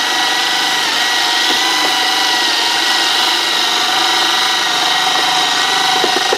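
Electric drill running steadily with a constant motor whine, spinning a homemade mixing rod tipped with a small circular saw blade that churns soaked paper pulp and water in a plastic bucket.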